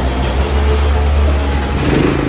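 Portable petrol generator being started on its electric start: the engine cranks with a heavy low rumble for nearly two seconds, then catches near the end and settles into a steady run.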